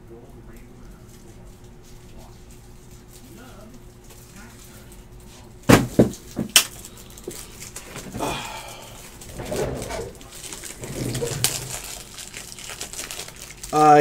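Faint room noise with a steady low hum, then two sharp knocks about a second apart halfway through, followed by irregular rustling and handling noises of someone moving things about.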